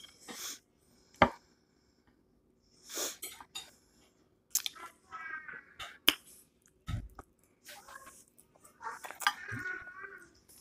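Close mouth sounds of a person eating cheese fries: chewing and smacking, broken by a few sharp clicks, one about a second in and one about six seconds in, and a low thump about a second later.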